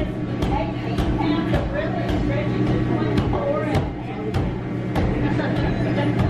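Indistinct chatter of a small indoor crowd over a steady low hum, with sharp clicks every half second or so.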